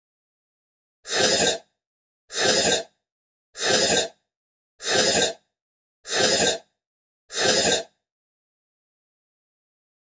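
A short, noisy sound effect repeated six times at an even pace, about one every 1.2 seconds, each burst lasting about half a second.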